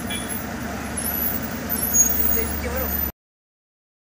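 Heavy log-laden truck's diesel engine running steadily under faint voices, growing louder from about halfway. The sound cuts off abruptly about three seconds in.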